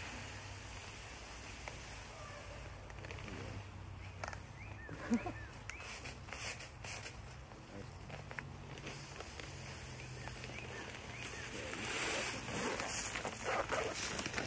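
Seed being poured from a paper bag into a hand-held spreader bag: a faint, steady rustle and patter of seed, rising a little near the end.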